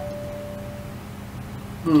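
Clothes dryer's end-of-cycle alert going off: a single steady electronic tone lasting about a second, signalling that the drying cycle has finished.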